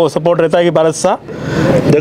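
A man speaking Hindi for about a second, then a short rising rush of noise just before the speech starts again.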